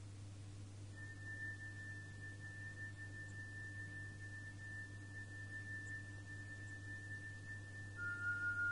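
A single high, steady pure tone like a tuning fork starts about a second in and is held unchanged; under it runs a constant low hum. It is the quiet opening of the soundtrack music for the next part of the ballet.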